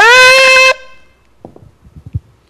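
A shofar blown right at the microphone: one loud blast that swoops up in pitch, holds for under a second and stops abruptly. A few faint clicks follow.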